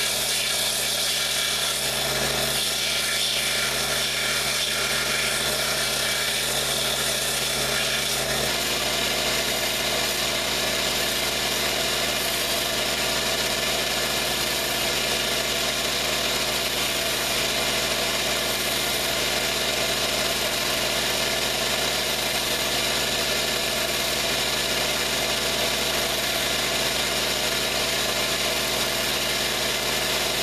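Craftsman bench belt sander running steadily while narrow leather strips are held against the moving belt. The low hum shifts slightly about eight seconds in.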